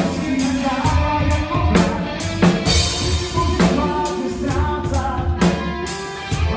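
A rock band playing live: drum kit beating a steady rhythm under electric guitars and bass, with a singer's voice.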